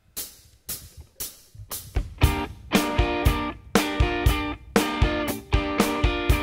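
Indie-rock band starting a song live: a few sharp percussive hits about twice a second, then about two seconds in the drum kit, bass and electric guitars come in together with rhythmic strummed chords.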